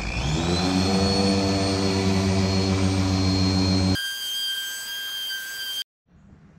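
Cheap dual-action polisher winding up from speed one to speed six as polishing begins: a rising whine in the first second, then a steady motor whine. About four seconds in the sound changes abruptly to a thinner, high-pitched whine, which cuts off suddenly just before the end.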